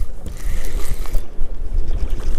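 Wind buffeting the microphone, a loud, steady low rumble.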